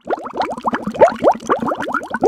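Bubbling water sound effect: a quick, loud run of rising plops that starts abruptly.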